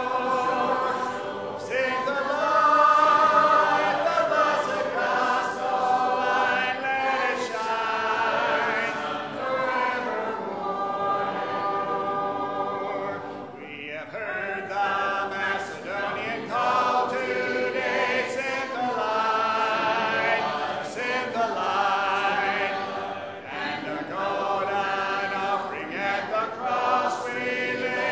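A church congregation singing a hymn together a cappella, many voices without instruments, with a short break between lines about halfway through.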